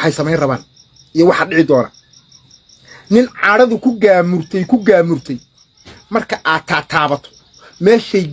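A man speaking animatedly in bursts, with a cricket chirping steadily behind him in a fast, even high-pitched pulse.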